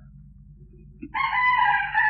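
A rooster crowing once: a single held call about a second long, starting about halfway through, over a low steady hum.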